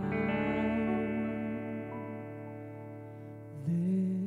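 Live grand piano and a woman singing. A piano chord rings on steadily and slowly fades between sung phrases, and her voice comes back in near the end.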